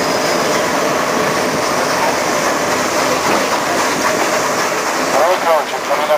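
Steam excursion train rolling along the track, heard from aboard an open passenger car: a steady running noise of wheels on rails. A man's voice starts near the end.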